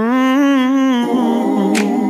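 A cappella vocal music: one voice holds a wordless note for about a second, then several voices come in with a chord, and a single finger snap lands near the end.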